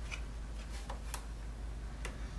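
A few light clicks and ticks of a wire armature being handled and bent by hand, over a faint steady low hum.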